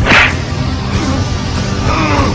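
A sharp whoosh sound effect at the very start, dying away within a fraction of a second, over a dramatic orchestral music score.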